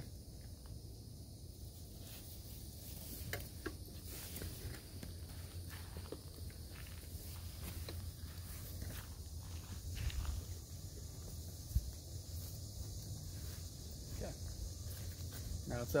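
Faint rustling and handling of a nylon mesh hammock bug net as it is pulled along the hammock, with scattered small clicks over a low steady rumble.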